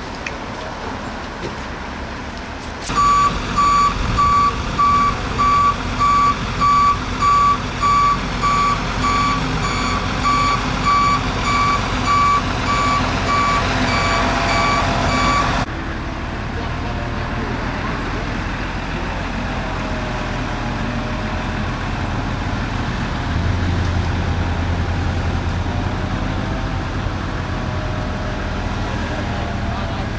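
Heavy vehicle's reversing warning beeper, a high beep repeating about one and a half times a second, over a truck engine running while a crane truck lifts a car. The beeping stops suddenly about 16 seconds in, leaving the engine and vehicle noise.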